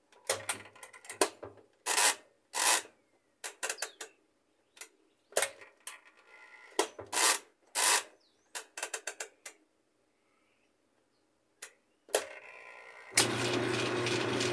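Whirlpool top-load washer's mechanical timer dial being turned, clicking in irregular runs for about ten seconds. About a second before the end the knob is pulled and the washer's motor starts with a steady hum, running the wash cycle in an empty tub.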